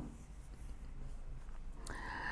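Quiet room tone in a small room: a steady low hum under faint hiss.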